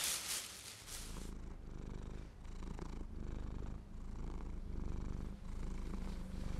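A cat purring: a low, steady rumble that rises and falls in cycles of about a second, starting about a second in.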